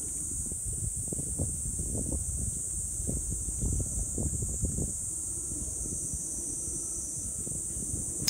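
Steady high-pitched drone of insects, with wind buffeting the microphone in gusts during the first five seconds.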